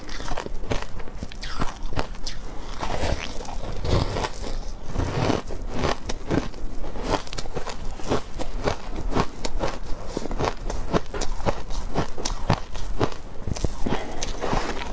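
Close-miked crunching of refrozen shaved ice being bitten and chewed: a dense, irregular run of crisp crunches, several a second.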